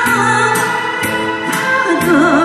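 A woman singing a Korean trot song through a microphone, with long held notes over amplified backing music. A steady beat ticks about twice a second.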